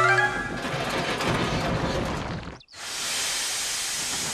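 Background music fades in the first half-second as a steam engine comes off the rails in a long, rough, clattering crash. After a sudden break, a steady hiss of steam comes from the derailed engine.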